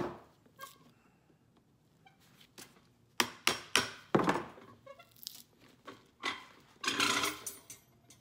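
Hand tools, a screwdriver and then a knife, prying and cutting at the old sole of a leather cowboy boot to strip it for a resole. There are scattered knocks and clicks, then a longer scrape near the end.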